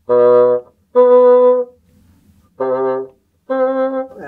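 Bassoon playing four short held notes: low B then the B an octave above, then low C and the C an octave above. Each pair keeps the same fingering apart from the whisper key, and the upper note is made to speak by changing the inside of the mouth from an 'ah' to an 'ee' shape.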